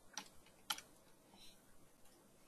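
A few faint computer keyboard keystrokes, with one sharper click a little under a second in.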